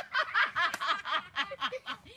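Laughter: quick, repeated bursts of laughing that die down at the very end.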